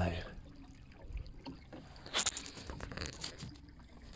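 Water trickling and lapping along the hull of a wooden Mirror dinghy under sail, with a short burst of clicking knocks about two seconds in.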